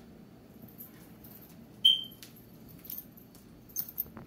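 A single short, high-pitched squeak about halfway through, during a kitten's play with a wand toy, with a few light clicks near the end.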